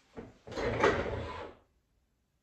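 A short knock, then about a second of loud rustling and handling noise as someone leans in with an acoustic guitar and reaches for the recording device.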